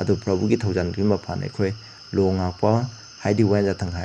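A man's voice speaking in short phrases with brief pauses, over a steady high-pitched tone.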